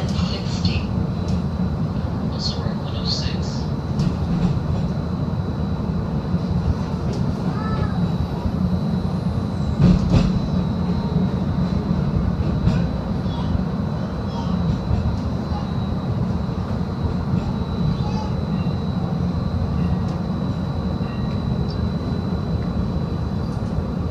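Interior running noise of a Seattle streetcar: a steady low rumble with a thin, steady high whine over it, and one sharp knock about ten seconds in.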